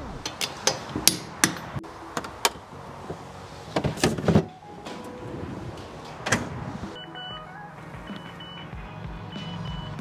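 Hand wheel brace and socket working a car's wheel nuts: a run of sharp metallic clicks, about three a second, then a louder clatter of knocks about four seconds in and one more knock a couple of seconds later.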